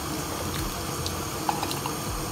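Cherry syrup boiling in a large enamel pot: a steady bubbling with a few small pops scattered through it.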